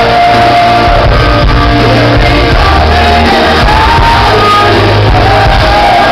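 Glam-metal band playing a power ballad live in a large hall, very loud: long held sung notes over heavy bass and drums, with shouts on top.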